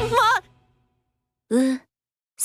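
Anime voice acting: a young man's flustered cry with a wavering pitch breaks off within half a second, followed by silence, then a short breathy sigh about a second and a half in.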